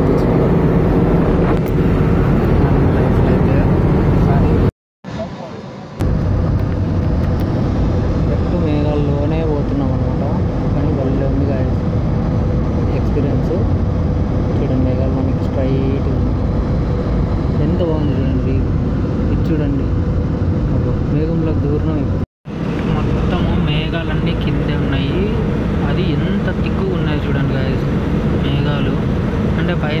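Steady roar of a jet airliner's cabin in cruise, heard from a window seat beside the wing-mounted engine, with voices talking over it. The sound cuts out completely twice, briefly about five seconds in and for an instant past the middle.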